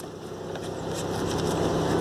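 A motor vehicle engine running steadily with a low hum, growing gradually louder.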